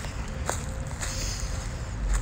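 Footsteps on dry leaf litter and grass, with a few sharp ticks over a faint steady hum.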